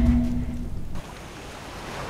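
A sustained music chord from the drama's score cuts off abruptly about a second in, giving way to the steady wash of sea surf on a beach.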